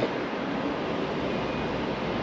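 Steady outdoor background noise, an even rushing hiss with no single sound standing out.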